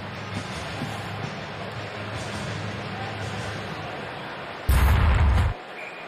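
Hockey arena ambience: crowd murmur with music playing over the arena sound system. About five seconds in comes a loud, short boom with a heavy low rumble lasting under a second, after which the music's low end drops away.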